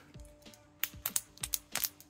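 Small hard plastic clicks from the joints of a 3D-printed articulated crab figure as its legs are flexed by hand. The print-in-place joints are still tight, and the clicks are the parts being worked loose. About six quick clicks come in the second half.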